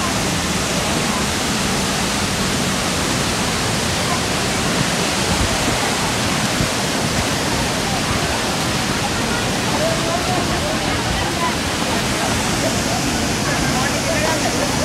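Dunhinda Falls, a large waterfall in brown flood, giving off a steady rushing noise of falling water. Crowd voices can be heard faintly under it around ten seconds in.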